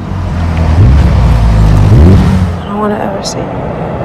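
A car engine revving, its pitch rising twice over the first two seconds before it dies away and a voice starts.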